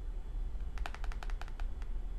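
A quick run of about nine light clicks over about a second, starting a little under a second in: tarot cards being handled on a wooden table.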